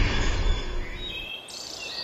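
A low rumble fades out over the first second, then birds begin chirping and calling about one and a half seconds in, over a steady hiss of outdoor ambience.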